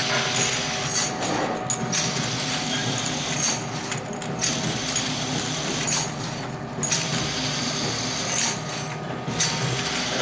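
Two-nozzle ampoule filling and sealing machine running: a steady mechanical din with clatter that repeats as the machine cycles.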